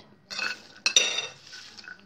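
Garlic peels and garlic being tipped into a food-processor bowl: a short rustle, then a sharp clink with a brief ring against the bowl about a second in.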